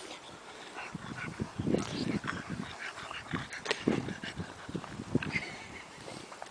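A French bulldog snuffling and grunting as it pushes its muzzle through sandy dirt: a string of short, low, irregular noises with small scuffs.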